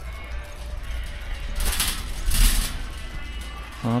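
Shopping cart rolling along a store aisle: a steady low rumble with a louder rattling stretch of about a second near the middle, under faint background music.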